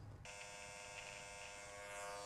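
Electric hair clippers buzzing steadily and fairly quietly, starting about a quarter second in.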